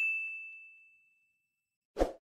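Notification-bell ding sound effect from a subscribe-button animation: one high chime fading out over about a second and a half. A brief burst of noise comes at the very end.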